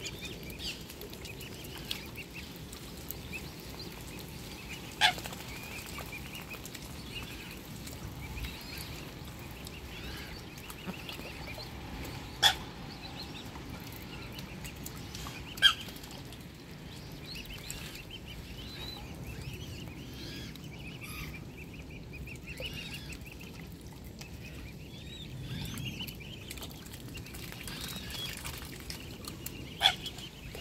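Mute swan cygnets peeping, a steady stream of short, high calls as they feed. Three sharp taps stand out as the loudest sounds.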